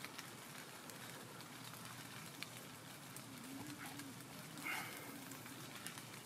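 Light rain just starting: a faint hiss with scattered ticks of single drops landing.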